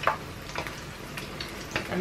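Saltfish fritter batter frying in hot oil in a frying pan: a steady sizzle, with a few light clicks of metal tongs against the pan as the fritters are turned.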